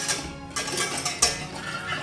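Metal balloon whisk scraping and ticking around a stainless steel saucepan in a few quick strokes, mixing dry sugar and cornstarch. Soft background music underneath.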